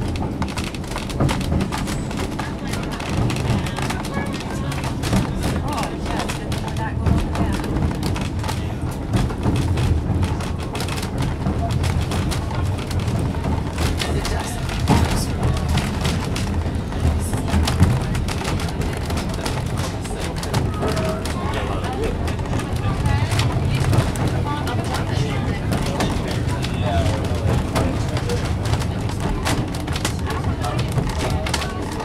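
Moving narrow-gauge train passenger car rumbling and rattling along the track, with many small knocks and clicks from the wheels and car body, heard from inside the car. Indistinct voices of passengers run underneath.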